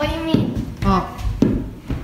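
Basketballs dribbled on a hardwood floor, about one bounce every half second, with a child's voice briefly at the start.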